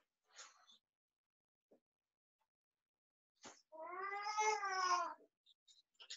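A single drawn-out pitched cry, rising and then falling in pitch, lasting about a second and a half near the end, with a faint knock or two before it.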